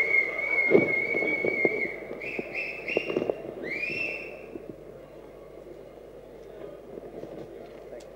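A person whistling loudly: one long steady whistle lasting about two seconds, then three short whistles stepping up in pitch and a final upward-swooping whistle about four seconds in. A few sharp taps sound underneath.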